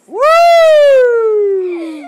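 A toddler's single long, loud wail: it shoots up in pitch at the start, then slides slowly down until it stops just before the end.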